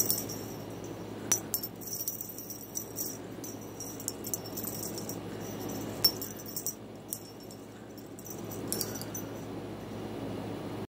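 Small bell jingling in short, irregular bursts, shaken by a cat at play, with a sharp click about a second in and another near six seconds.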